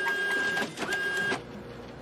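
Edited-in TV-static glitch sound effect: a hiss with a steady high beep sounding twice, each about half a second long, then fainter static that cuts off at the end. It goes with a 'failed' stamp, marking a task as failed.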